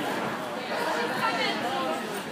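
Indistinct chatter of several people talking at once, echoing in a large indoor arena.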